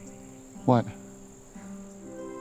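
Quiet background music of soft held notes under a steady high-pitched hum. A single short spoken word falls in the middle.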